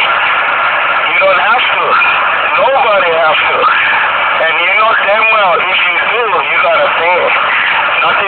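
Indistinct speech, talking on and off throughout, over a steady background noise.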